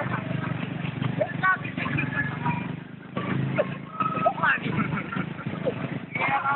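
Excited voices calling out in short bursts over the steady hum of motorcycle and street traffic.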